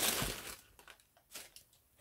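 Tissue wrapping paper crinkling as a sneaker is pulled out of its shoebox, dying away after about half a second, with a faint rustle a little later.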